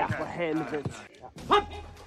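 A man's loud wordless shout, falling in pitch, in the first second, then a sharp knock and another brief shout about halfway through.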